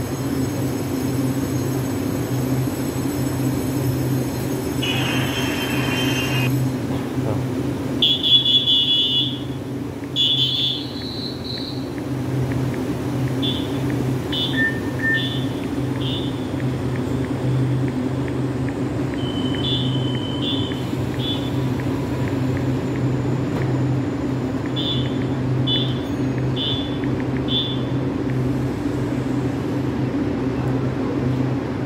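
Stationary EMU800-series electric commuter train giving off a steady low electrical hum. Over it come repeated short, high-pitched electronic beeps, the later ones in runs of four.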